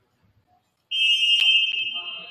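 Referee's whistle: one long, shrill blast starting about a second in, then fading in the gym's echo, with a single sharp knock partway through.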